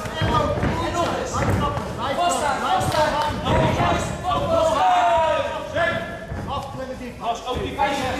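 Voices shouting almost without pause, one drawn-out call falling in pitch about five seconds in, over dull thuds of kicks and punches landing in a kickboxing bout.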